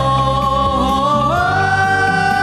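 Amplified singing of a Vietnamese duet with band backing over a PA. A sustained, wavering vocal line steps up in pitch about one and a half seconds in and then holds.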